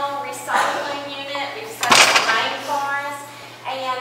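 A person speaking, with one sharp knock or clatter about two seconds in, louder than the voice, over a faint steady low hum.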